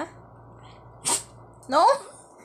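A small long-haired dog sneezes once, a short sharp burst about a second in. A woman's voice says a short word near the end.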